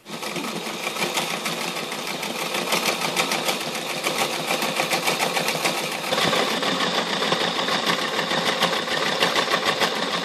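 A Toyota domestic electric sewing machine stitching a seam through canvas, running steadily at a fast stitch rate with a continuous rapid needle clatter. Its tone shifts slightly about six seconds in.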